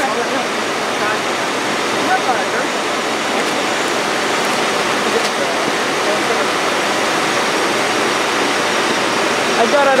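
Loud, steady rushing noise of refinery plant machinery, unchanging throughout, with faint voices under it.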